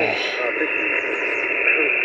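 A distant station's voice received on single-sideband through a portable HF transceiver's speaker: thin, narrow-band speech over steady static.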